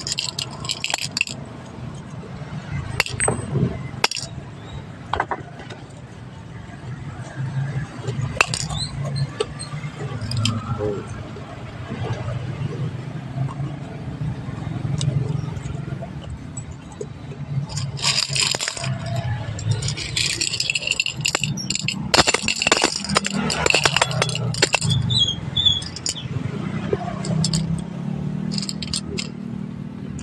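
Small metal objects clinking and rattling against a cut-glass bowl as a hand stirs and picks through them, with a busier run of clinks about two-thirds of the way through. A man's low voice talks underneath.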